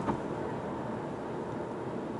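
Steady tyre and wind noise inside the cabin of a 2018 Mercedes CLS cruising at about 100 km/h on a highway.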